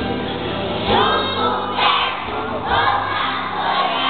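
A large group of young children singing and shouting together over music, with loud group shouts about once a second.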